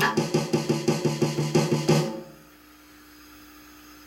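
Fast, even drum roll played with sticks on an electronic drum kit, about ten separate strokes a second for roughly two seconds before stopping suddenly. It is an open roll of distinct strokes, not a pressed buzz roll.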